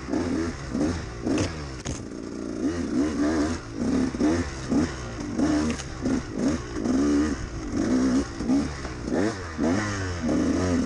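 A 2013 KTM 200 XC-W's two-stroke single-cylinder engine revving up and dropping back over and over under short throttle bursts as the bike is ridden over rough ground. From about four seconds in, the bursts come about twice a second.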